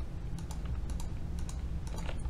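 Computer mouse clicking several times, a run of light clicks over a low steady hum.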